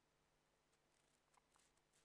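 Near silence: faint room tone, with a few very faint clicks in the second half.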